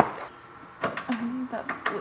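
A few sharp metallic clicks and clinks from a socket wrench working a bolt on the car's underside, with a short hum from the person doing the work about a second in.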